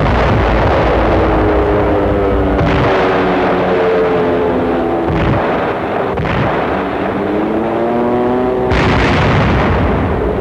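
Soundtrack of a bombardment: heavy explosions, with fresh blasts a few seconds apart (about four), over a continuous drone of aircraft engines whose pitch slowly sinks and then rises again near the end.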